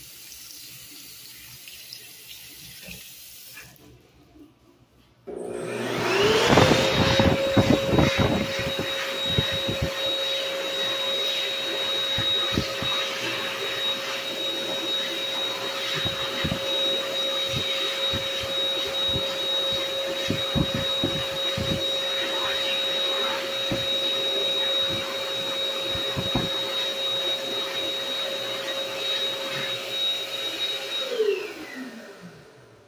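Mediclinics Speedflow Plus (M17ACS-UL) hand dryer switching on about five seconds in. Its motor whine rises quickly and settles at a steady pitch within about two seconds, then runs on with a rush of air and irregular low thuds.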